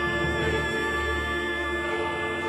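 Symphony orchestra strings holding a sustained chord in long bowed notes, with a low bass note beneath that drops out near the end.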